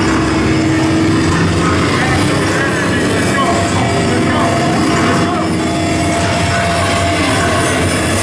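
Live band between songs: loud, held guitar feedback tones and amplifier drone from the stage, with voices in the room. The drums and full band come in right at the end.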